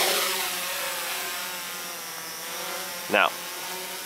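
Quadcopter's brushless motors and propellers whining steadily in flight, running on SimonK-flashed 30-amp speed controls. The whine fades and drops slightly in pitch over the first couple of seconds as the craft moves away.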